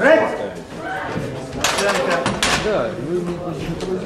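Men's voices in a large, echoing hall, with a brief loud noise about two seconds in.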